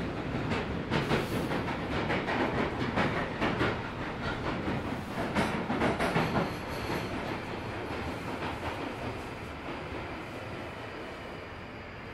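London Underground Northern line train heard from inside the carriage, running through a tunnel with a steady rumble and irregular clicks of the wheels over rail joints. The noise eases over the last few seconds as the train slows into a station.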